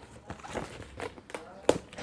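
Cardboard box flaps and sticky packing tape being cut with scissors and pulled apart: scattered crackles and knocks, the sharpest about 1.7 seconds in.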